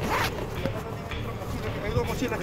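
A zipper pulled once in a short rasp near the start, among the handling of clothes and bag contents.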